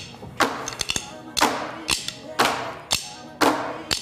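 Drumsticks beating on padded plastic milk crates during a cardio-drumming workout, a loud group hit about once a second with lighter taps between, over a backing music track.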